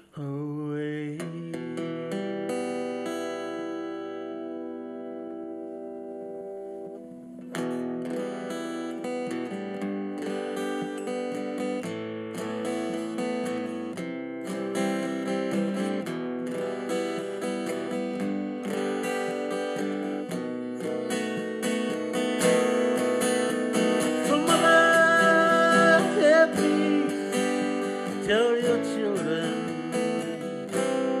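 Acoustic guitar played solo: a chord rings out and fades over the first several seconds, then strummed chords start up again about seven seconds in and grow louder toward the end.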